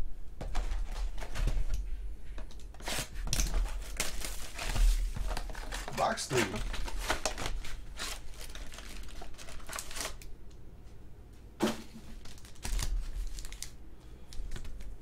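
A sealed trading-card hobby box being torn open by hand: a dense run of rips and crinkles of the plastic wrapping and cardboard, easing off after about ten seconds, with one sharp knock near the end.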